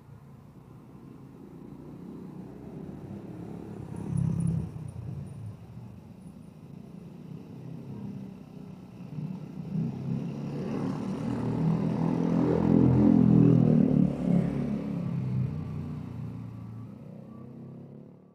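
Motorcycle engines passing along a street: a short pass about four seconds in, then a longer one that builds to its loudest around two-thirds of the way through and fades away.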